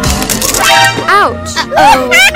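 A sharp crack right at the start as a foot stamps on a purple toy, over background music. Rising and falling gliding, voice-like sounds follow about a second in.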